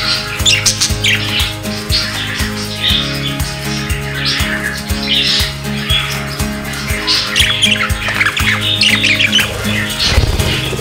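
Budgerigars chirping and squawking in irregular bursts of chatter, over background music with a steady beat.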